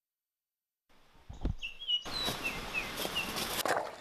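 Silence for about the first second, then outdoor ambience fades in: small birds repeating short, down-slurred chirps over the steady hiss of running stream water, with a single low thump about a second and a half in.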